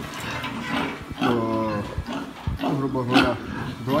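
A sow grunting: two drawn-out, low grunts, one about a second in and another near the three-second mark.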